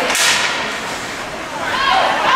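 A brief, sharp scrape of ice hockey play on the rink ice, fading within about half a second. Spectators' voices come in near the end.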